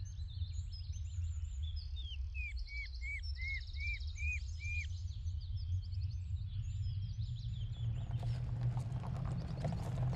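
Birds chirping and calling over a steady low rumble, including a run of seven short repeated whistled notes in the middle. From about eight seconds in, a rising noise of a car driving in across the yard, its engine and tyres growing louder.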